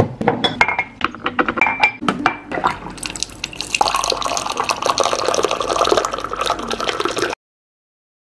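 Clinks and knocks of kitchenware being handled, then hot water pouring from an electric hot-water dispenser into an enamel mug over a tea bag, a steady filling sound that cuts off suddenly near the end.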